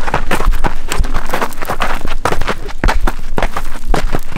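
Running footsteps crunching on a gravel and rock trail, about three to four quick steps a second.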